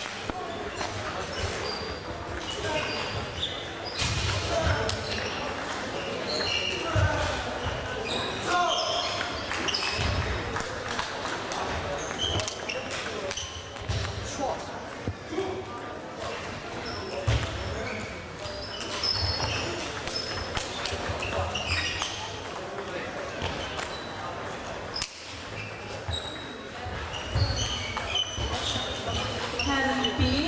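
Table tennis hall ambience: indistinct voices echoing in a large hall, with celluloid-type table tennis balls clicking and bouncing at nearby tables and many short high squeaks scattered throughout.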